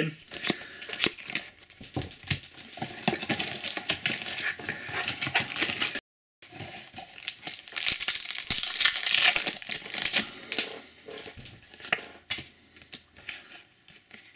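Foil wrapper of a Match Attax trading-card pack crinkling and tearing as it is handled and opened by hand, in irregular bursts of crackle. The sound drops out completely for a moment about six seconds in.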